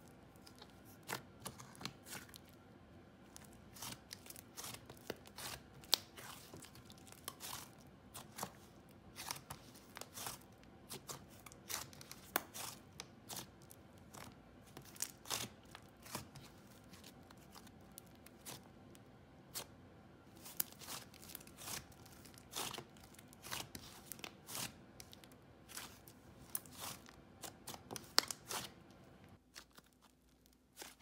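Slime OG's Cookies and Cream Squish, a dense, thick, clay-heavy butter slime, squished, stretched and folded by hand, giving quick irregular clicks and soft tearing crackles, several a second. The clicking stops just before the end.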